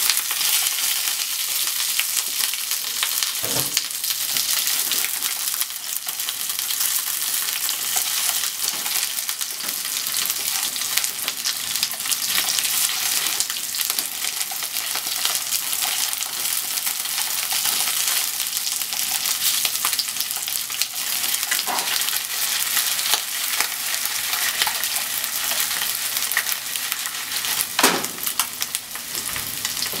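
Chicken pieces sizzling in oil in a nonstick frying pan over a gas flame: a steady frying hiss. A few sharp knocks come through it as the pieces are stirred with chopsticks.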